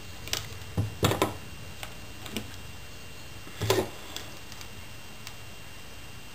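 Scattered light clicks and taps as beaded metal wire is handled and bent, about eight in all, the loudest about three and a half seconds in.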